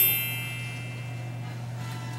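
A bright bell-like chime ringing out and fading over about the first second, over a low steady hum.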